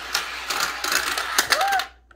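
Plastic clicking and clattering of a Santa's Ski Slope toy's lift and track, a fast irregular run of small clicks, with a short higher tone near the end.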